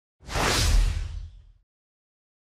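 Whoosh transition sound effect with a deep rumble underneath, coming in just after the start and fading out about a second and a half later.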